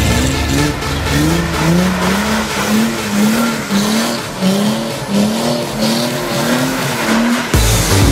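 Chrysler Crossfire's V6 engine revving up again and again, about twice a second, as the car spins on loose dirt, with tyres scrabbling and skidding.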